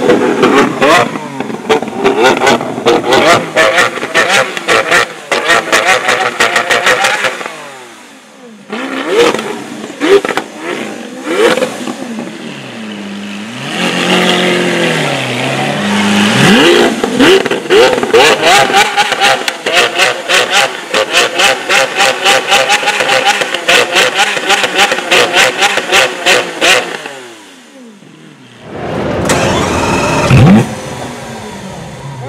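Lamborghini Aventador's V12 with a sports exhaust being revved over and over, the exhaust crackling and popping rapidly. The revs rise and fall in quick blips through the middle, with short lulls between bursts.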